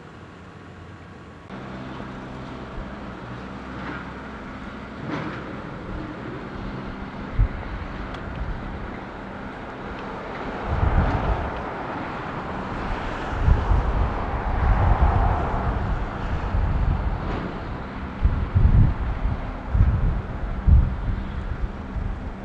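Motor vehicle engine hum, a steady low drone that grows louder over the first half. In the second half there are irregular gusts of wind buffeting the microphone.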